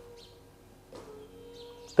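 Faint bird calls in the background over quiet room tone, with a soft click about a second in.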